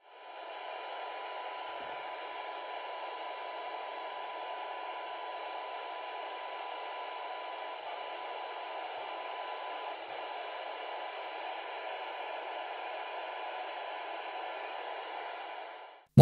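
Baofeng handheld radio's speaker hissing with FM receiver noise, a steady 1 kHz test tone from the TinySA Ultra signal generator heard through it. The signal is weak, near the radio's sensitivity limit, and the tone fades into the hiss about ten seconds in as the generator level is lowered.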